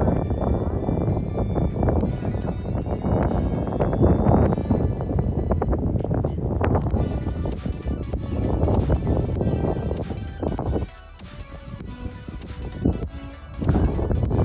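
Background music laid over the footage, dipping quieter for a couple of seconds about eleven seconds in before it swells back.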